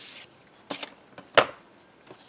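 A sheet of card stock swishes briefly as it slides across the craft table. A faint tap follows, then one sharp knock of an ink pad being set down on the table about a second and a half in.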